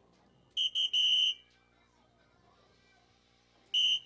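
Electronic soft-tip dartboard sounding its scoring beeps as darts hit: a quick run of three bright electronic tones about half a second in, the last held longest, and another short tone near the end.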